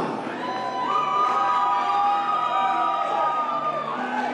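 Crowd cheering and whooping, with several long held high calls lasting about three seconds.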